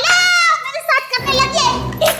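A woman's very high-pitched vocal cry, held for about half a second and rising then falling, followed by shorter high-pitched vocal sounds. Background music with a low beat comes in about a second in.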